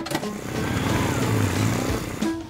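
Cartoon sound effect of small vehicles driving off: a steady low motor hum with road noise that fades near the end.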